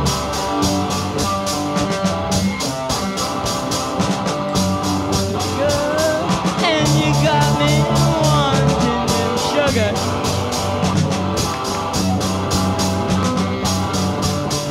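Punk rock band playing live, with electric guitar, bass and drums going at full tilt.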